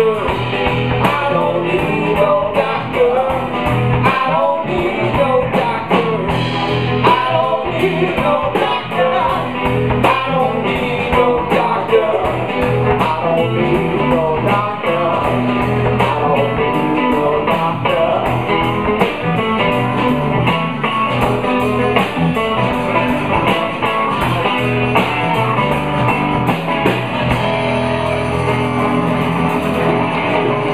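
Live blues-rock band playing: electric guitar over a Pearl drum kit and bass guitar, at a steady tempo.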